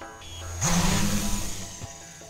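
Small quadcopter drone's electric motors and propellers buzzing, a steady low hum with a loud hiss that starts about half a second in and fades near the end, over background music.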